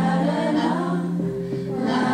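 Music: a choir singing, holding long notes over a steady low note.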